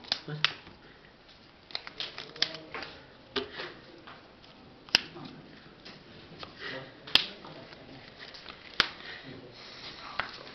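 Trading cards being handled on a playmat: short rustles and sharp taps as cards are set down, picked up and moved, at irregular intervals, with three sharper clicks about halfway through, near seven seconds and near nine seconds.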